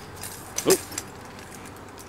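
A man's short exclamation "oh" a little before the middle, with a few faint clicks from a camera bag's strap and metal clip as the bag is hung up to be weighed.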